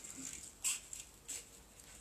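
Scissors snipping a cardboard egg box, a few short sharp cuts.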